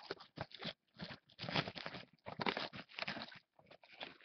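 Clear plastic shrink wrap crinkling and tearing as it is peeled off a sealed cardboard trading-card box, in irregular bursts of crackle.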